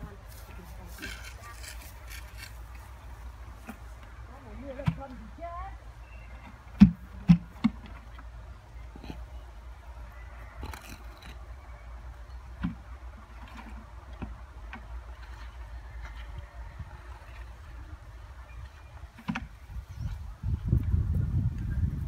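Scattered knocks and clatters of hand work with bricks and buckets on a grave's masonry; two sharp knocks about seven seconds in are the loudest. Under them is a low steady rumble that swells near the end.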